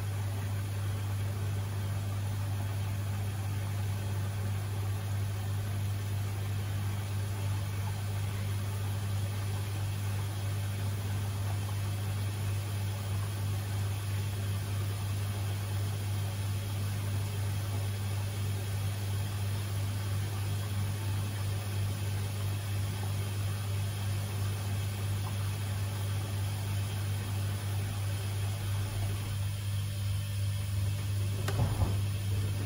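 Samsung WW90J5456FW front-loading washing machine running mid-cycle with its drum at rest, giving a steady low hum.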